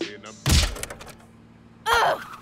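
A single heavy thunk about half a second in, a cartoon impact sound effect that dies away over the next second.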